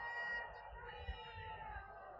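Faint, drawn-out chanting voices, several wavering pitched lines overlapping.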